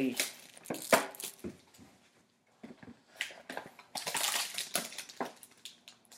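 Clear cellophane shrink wrap crinkling and crackling as it is torn off a box of trading cards, in irregular bursts with a short pause midway and a denser stretch of crinkling near the end.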